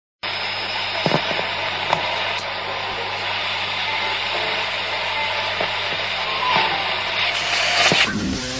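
Steady hiss of static with a low hum under it, two clicks about one and two seconds in, and faint snatches of tone that come and go.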